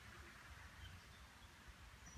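Near silence: faint outdoor background hiss with a low hum.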